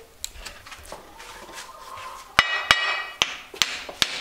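Hammer blows driving a wedge into the eye of a hoe to lock the blade tight on its wooden handle. A few light taps come first, then four sharp, loud blows in the second half, the first with a metallic ring.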